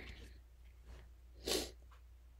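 A person sniffing once sharply through the nose, about one and a half seconds in: the sniffles left by a sneeze that wouldn't come.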